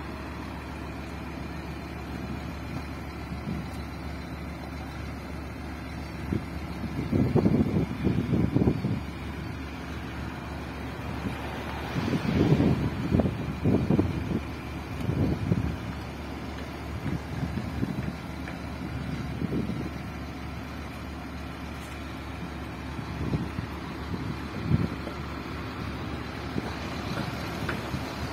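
Heavy diesel machinery at an earthworks site, such as a dump truck and loader, running steadily. There are several irregular louder low surges, about 7 seconds in, from about 12 to 16 seconds in, and again near the end.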